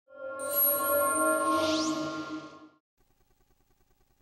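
Short electronic musical sting: sustained synthesized chord tones with a rising whistle-like sweep high up, cutting off abruptly a little under three seconds in.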